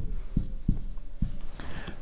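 Marker pen writing on a whiteboard: a quick series of short strokes and taps as Arabic letters are written.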